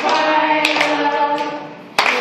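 A group of voices singing together, a birthday song with held notes, fading a little near the end.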